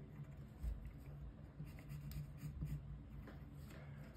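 Wooden pencil drawing a curve on paper: faint, intermittent scratching of graphite on the page, with one soft low thump about two-thirds of a second in.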